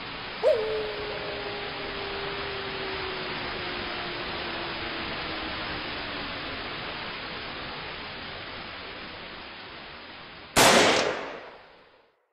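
Steady static hiss with a long tone that slides slowly down in pitch, then a single loud bang near the end that dies away over about a second.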